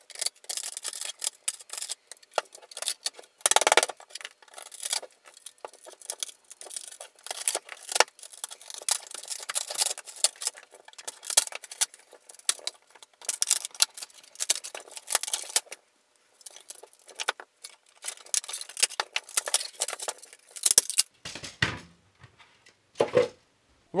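3D-printed PLA support material being pried and broken out of a printed shell with a screwdriver: irregular crackling, snapping and scraping of plastic in quick runs with short pauses. A few heavier knocks come near the end.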